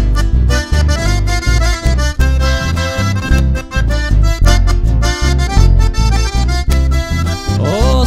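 Live Argentine folk band playing an instrumental passage: a button accordion carries the melody over a steady, pulsing electric bass line and strummed acoustic guitar.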